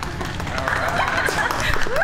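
A young woman's voice laughing and squealing in short broken bursts over a steady low rumble.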